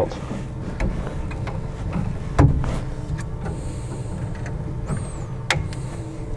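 Light clicks and taps of a servo cable and its small plastic plug being handled against a 3D printer's printhead mount, with the loudest knock about two and a half seconds in, over a steady low hum.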